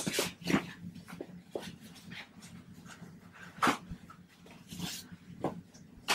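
Scattered short rustles and scrapes of nylon straps and the vinyl cover of a vacuum splint as the loose strapping is tucked in, with about seven irregular handling noises and the loudest a little past halfway.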